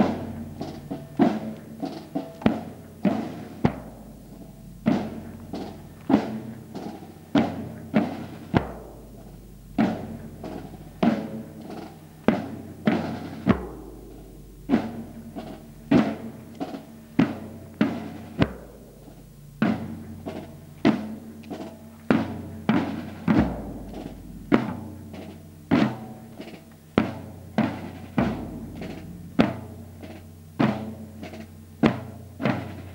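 Marching drum corps of a bass drum and rope-tensioned side drums beating a processional rhythm: sharp strikes about twice a second in repeating groups, with low bass-drum booms that ring on.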